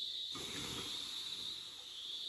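Stream water poured from a frying pan onto hot charcoal embers, hissing for well over a second as the campfire is doused. A steady high drone of insects runs underneath.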